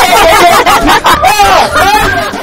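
Loud, excited voices of several people talking over each other, with laughter.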